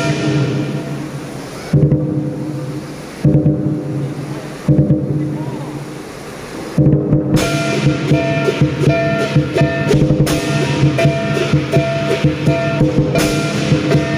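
Southern lion dance percussion: a big drum with gong and cymbals. About two seconds in, the playing drops to three single heavy strikes about a second and a half apart, each left to ring. A fast, dense beat resumes about halfway through.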